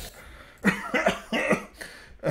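A man coughing, four short coughs in quick succession.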